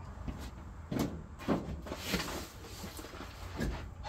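Cardboard box of heavy books being handled and moved: a few short knocks and bumps in the first second and a half, a brief rustle of cardboard about two seconds in, and a few lighter knocks near the end.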